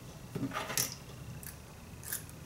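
Faint clicks and rustling from hands winding hair into a pin curl and handling a metal hair clip, with a few light ticks in the first second and one more halfway through.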